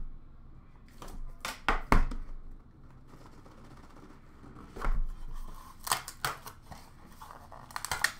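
Cardboard trading-card box being opened by hand: scraping and sliding cardboard with crinkling wrapper, broken by several short sharp taps and knocks as the box is handled.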